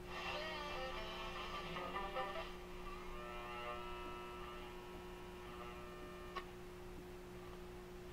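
An AM radio being tuned across the band: stations' audio comes through the speaker in short stretches over a steady hum, with music for the first couple of seconds and then another station until a click at about six and a half seconds, after which only the hum is left.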